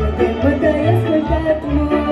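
A woman singing a Romanian folk song through a microphone and PA over amplified backing music, with a steady pulsing bass beat.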